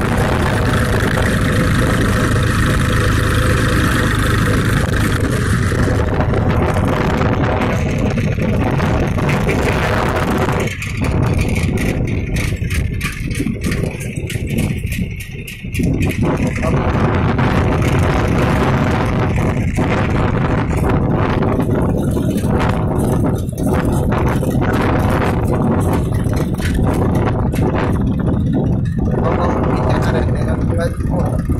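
Farm tractor engine running steadily as the tractor is driven, heard from the driver's seat. The engine sound drops briefly twice, about 11 and 15 seconds in. From about the middle onward it is joined by many sharp clicks and knocks.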